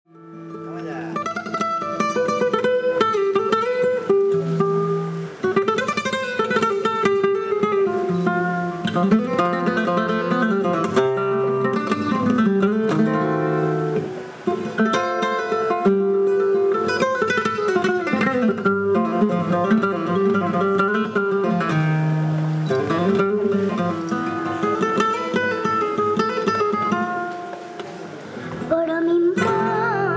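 Flamenco acoustic guitar playing, with a singer's voice in long, gliding, wavering lines over it.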